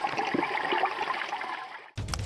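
Water splashing and gurgling at the surface in an uneven, churning rush, fading and cutting off suddenly just before the end.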